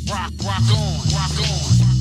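Hip hop track: a heavy bass line under rapped vocals, the bass dropping out at the very end as the track ends.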